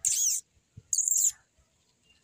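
A bird calling twice, about a second apart: two short, high-pitched chirps, each sliding down in pitch.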